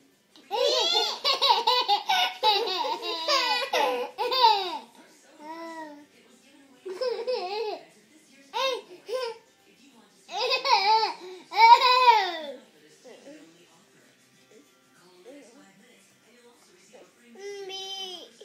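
A toddler giggling and babbling in high-pitched bursts, the longest in the first five seconds and another about ten to twelve seconds in, with short quiet gaps between.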